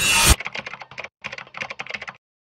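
A rising swell of trailer music cuts off sharply just after the start, followed by a quick run of computer-keyboard keystrokes, with a short pause about a second in.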